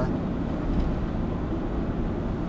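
Steady road and engine rumble inside the cabin of a moving car.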